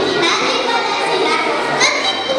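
Many children's voices talking at once in a large hall.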